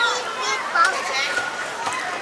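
Young children's high-pitched voices, short babbling calls and chatter, over the general hubbub of children playing.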